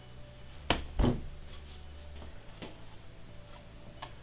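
Two sharp knocks about a third of a second apart as a block of cold process soap is handled on a plastic slab cutter, followed by a few lighter clicks.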